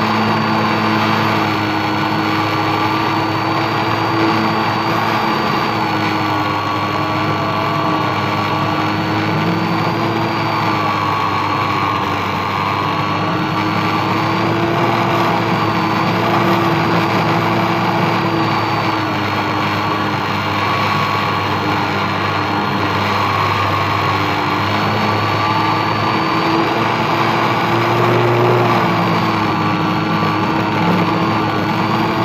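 Motor and propeller of a radio-controlled model airplane, heard from the onboard camera, running steadily in flight. The pitch drifts slightly up and down as the throttle and airspeed change.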